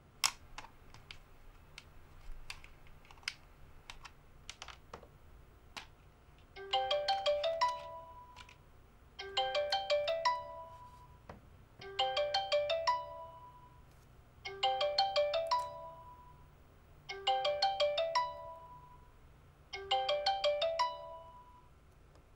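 Mobile phone ringtone: the same short melodic chime phrase repeating six times, about every two and a half seconds, starting about seven seconds in. Before it, scattered light clicks and taps of hand work on a model aircraft.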